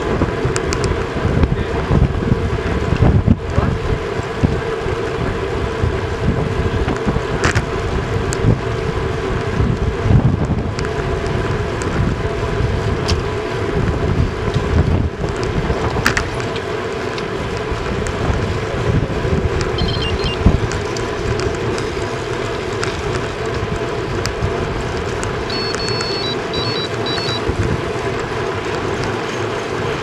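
Wind buffeting the microphone of a camera on a road bike riding at about 34 km/h, a fluctuating low rumble over a steady hum of tyres on the road.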